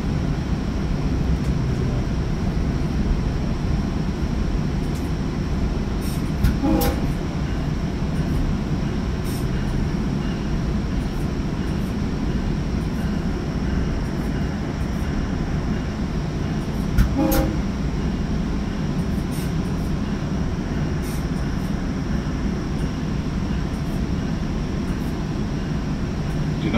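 Commuter train heard from inside a Bombardier bi-level coach while running on the rails: a steady low rumble of wheels and track. Two short sharp knocks come about six and seventeen seconds in.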